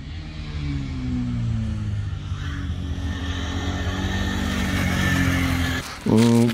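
KTM RC390's single-cylinder engine running as the bike is ridden, its note drifting gently up and down in pitch. The sound grows louder over the first second and then holds fairly steady.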